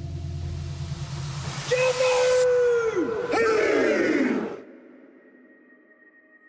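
A haka leader's two long shouted calls, each held and then falling in pitch at the end, over a loud stadium crowd roar. A low drone comes before them, and the calls and crowd cut off suddenly about two-thirds of the way in, leaving only faint steady tones.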